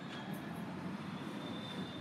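Steady low outdoor rumble, with a faint thin high tone about halfway through.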